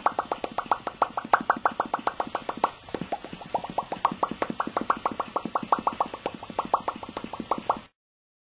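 A rapid, even string of short pitched bloops, about seven a second, like a bubbling-water sound effect. It breaks off briefly about three seconds in, then resumes and cuts off suddenly just before the end.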